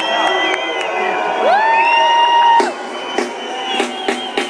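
Concert crowd whistling, whooping and cheering, with scattered handclaps; one long rising shout holds for about a second near the middle.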